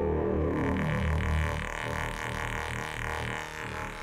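Make Noise DPO oscillator on a Eurorack modular synthesizer sounding a low, steady droning tone, its shape control set for a thinner timbre. It gets gradually quieter.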